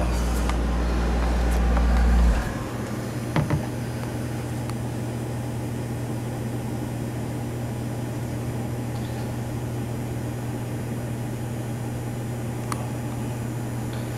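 Steady mechanical hum of room equipment, like a fan or air handler, with a deeper, louder drone underneath that cuts off suddenly about two seconds in; a couple of faint clicks.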